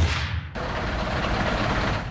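A broadcast transition stinger ends with a whoosh and a low boom. About half a second in it cuts hard to steady street noise with a vehicle engine idling.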